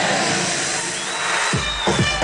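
Electronic dance music from a DJ set over a loud sound system. It starts as a noisy, bass-less build-up, and a heavy kick drum and bass drop in about one and a half seconds in.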